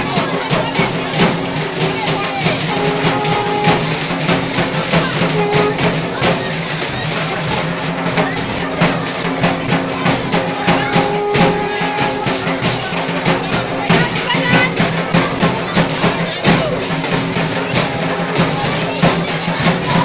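Festival music with fast, continuous drumming and short held tones now and then, over a crowd's voices.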